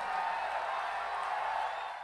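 Concert audience applauding, a steady even clatter of clapping that begins to fade near the end.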